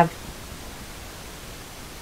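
Low, steady hiss of room tone with no distinct event; the slow pour of paint from the cup makes no sound that stands out.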